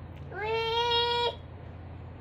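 Toddler's voice: one long drawn-out vocal note, rising at the start and then held level for about a second before stopping.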